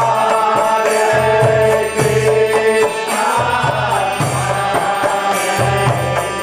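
Devotional kirtan: voices chanting a mantra in long, bending sung notes over a steady hand-drum beat.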